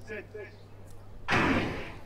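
Starting gun fired at the start of a 100 m hurdles race: one sharp shot about a second and a half in, with a short echoing tail.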